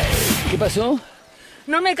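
Mostly speech: the rock soundtrack cuts off right at the start, a voice speaks briefly, and after a short pause a woman begins speaking in Spanish.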